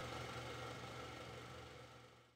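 A film projector sound effect running with a low steady hum and hiss, slowly fading away.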